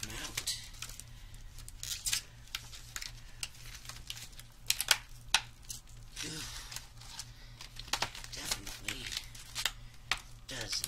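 Stiff clear plastic packaging crinkling and crackling as it is handled and worked open, in irregular sharp crackles, over a low steady hum.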